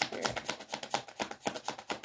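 A tarot deck being shuffled by hand: a quick, steady run of crisp card clicks.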